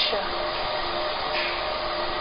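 Fiber laser marking machine running while it marks colour onto a stainless steel plate: a steady whirring hum with faint held tones, unchanging throughout.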